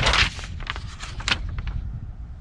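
A paper instruction sheet rustling and crackling as it is handled and laid down on a wooden table: one loud crinkle at the start, then a few lighter crackles, over a low rumble of handling or wind on the microphone.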